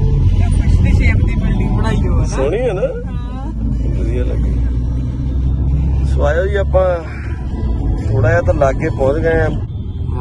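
Steady low rumble of road and engine noise inside a moving car's cabin, with a person's voice rising over it three times.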